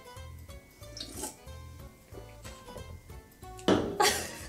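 Soft background music with a steady, repeating bass line. About a second in, a faint sound of drinking from a metal can is heard, and a voice starts just before the end.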